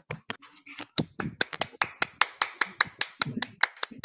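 A small group of people applauding with separate, sharp hand claps that come thick and fast from about a second in.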